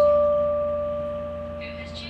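Electronic keyboard in a piano voice holding a single note that slowly fades away.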